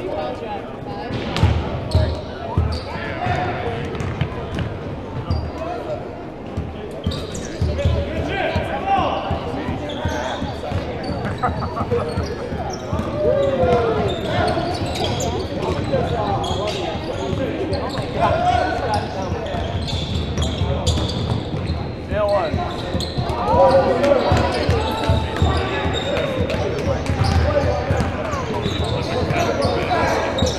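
Basketball game play on a hardwood gym floor: a ball bouncing repeatedly on the court and sneakers squeaking briefly, with players' and onlookers' voices, all echoing in a large gymnasium.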